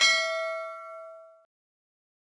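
A single bell-like ding, a notification-bell chime sound effect, ringing with several tones at once and fading out over about a second and a half.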